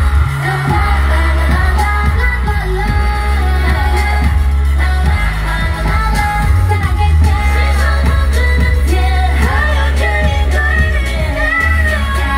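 Pop song with sung vocals over a heavy, driving bass beat, played loud over a stage sound system.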